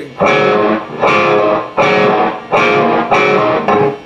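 Overdriven electric guitar picking a repeated low note on the open fifth string, five even strokes that each ring for about half a second.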